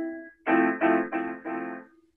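Small electronic keyboard playing an F major seven chord: a held chord fades at first, then the same chord is struck about four times in quick succession.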